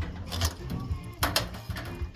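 Two sharp knocks about a second apart as the steel cage of a stacked IBC tote rattles while it is shoved over and starts to tip.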